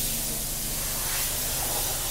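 Steady hissing background noise with a low, even hum underneath.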